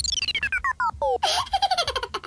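Electronic cartoon sound effect: a quick run of beeps stepping down in pitch, then a short burst and a rapid stutter of beeps.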